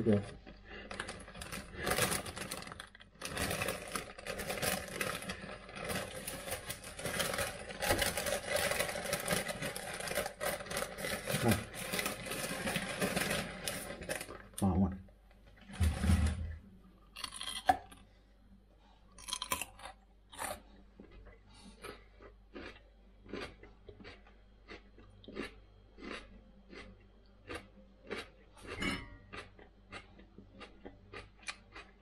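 Crinkly potato bag rustling through the first half. Then a bite into a raw potato, followed by short crisp chewing crunches, about two a second, to the end.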